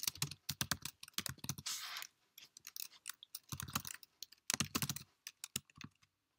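Typing on a computer keyboard: several quick runs of keystrokes separated by short pauses.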